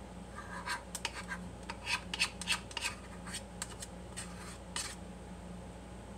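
Grated orange zest being scraped and tapped out of a small dish into a mixing bowl: a run of light scrapes and clicks, a few a second, that stops about five seconds in. A faint steady hum lies underneath.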